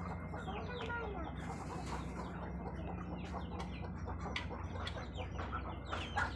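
A backyard flock of chickens and Muscovy ducks: chickens clucking, with many short calls overlapping, over a steady low hum.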